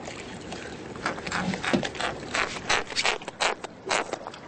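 A freshly landed triggerfish chomping its teeth, heard as a ragged run of short sharp clicks and scrapes that starts about a second in.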